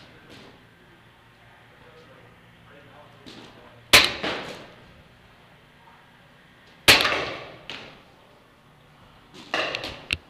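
Paintball shots cracking and echoing through a large indoor arena: a single loud shot about four seconds in, another about three seconds later, and a quick burst of several near the end.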